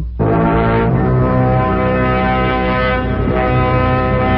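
Dramatic brass music sting: held brass chords enter right after the narration ends, moving to a new chord about a second in and again a little after three seconds.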